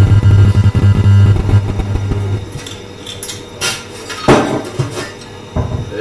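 Champagne poured from the bottle into a tall cocktail glass, a loud fizzing pour lasting about two and a half seconds. Then two sharp knocks about a second apart, as glassware is handled on the bar.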